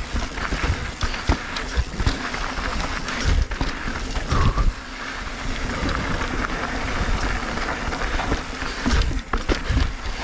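Mountain bike descending a rough, rocky trail: tyres crunching over stones and the bike clattering and knocking on the bumps, over a continuous low rumble.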